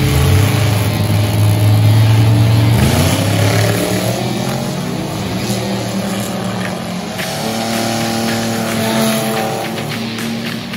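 A vintage gasser and a front-engine dragster launching off the drag strip line: a loud, steady engine sound at first, then the engines rise steeply in pitch as the cars accelerate away about three seconds in, with rock music playing over it.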